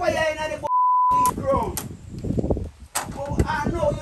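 A censor bleep: one steady, pure beep tone lasting about half a second, about a second in, blanking out a word in men's talk. The talk carries on around it.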